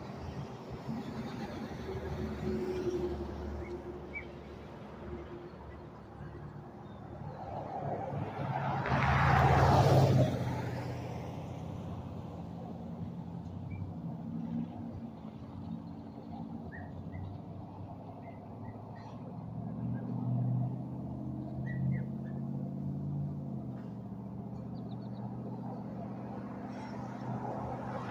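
Road traffic on a two-lane road: engines running as cars and trucks pass. One vehicle passes close about nine seconds in, swelling to the loudest point and fading away, and another passes more quietly around twenty seconds in.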